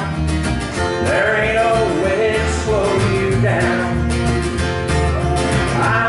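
Live country music: a strummed steel-string acoustic guitar over a plucked upright double bass, with a man singing.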